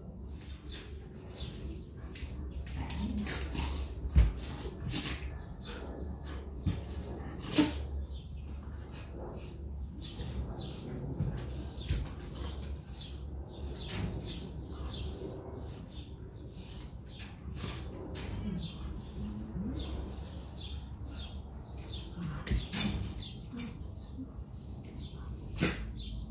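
Two dogs play-wrestling on a tiled floor: scattered sharp clicks and scuffles of claws and bodies on tile, with a few short low dog vocalizations now and then.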